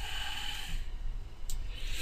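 The narrator breathing audibly into a close microphone, with a soft hiss early and another near the end. A single mouse click about one and a half seconds in.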